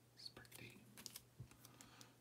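Faint clicks and scrapes of trading cards being flipped and slid through the hands, a quick run of small ticks.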